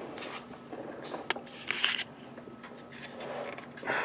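A few faint clicks and scrapes of handling over a low steady hum.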